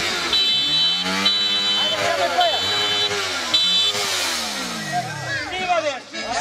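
A vehicle engine revving up and down several times, about once a second, then winding down in a long falling pitch near the end. A high electronic beep repeats in short pulses over it for most of the time.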